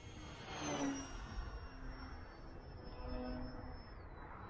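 Brushless electric motor and 10x7 propeller of a foam RC warbird flying past at a distance: a thin high whine that slowly falls in pitch, over low wind rumble on the microphone.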